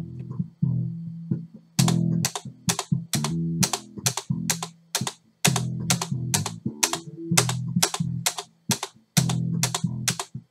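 A bass riff playing back from an audio file, with a computer keyboard's space bar tapped along in time from about two seconds in, roughly two taps a second, to set the tempo at about 130 beats per minute.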